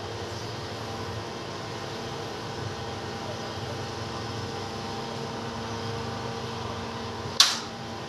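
A steady machine hum with several steady tones, like a running electric fan or air-conditioner, and a single sharp knock near the end.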